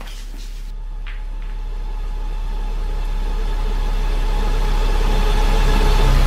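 A low, steady droning rumble with held tones above it, swelling steadily louder.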